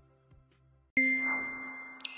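A single bright electronic chime sound effect, struck once about a second in and ringing on as it slowly fades. Before it there is near silence, with only the faint tail of the music dying away.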